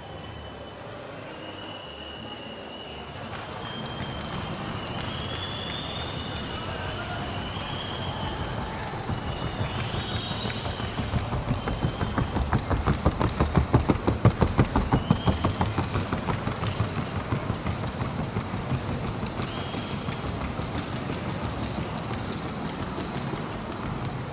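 Rapid, even hoofbeats of a gaited Colombian trocha mare striking the arena track, many strokes a second. They grow louder toward the middle, peak, and then fade as she passes.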